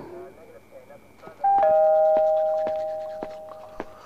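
Two-note doorbell chime sounds about one and a half seconds in: a higher ding followed by a lower dong, both notes ringing on and fading away over about two seconds.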